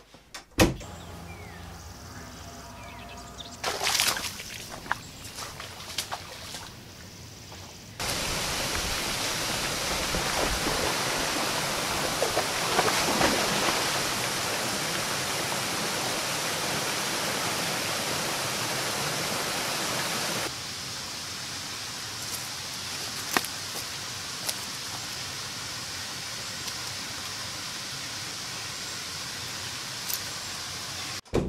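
A few knocks and rustles in a quiet room. About eight seconds in, a sudden cut to the steady rush of a small waterfall pouring into a stream, with splashing in the water. About twenty seconds in, it drops abruptly to a quieter, steady sound of flowing water outdoors.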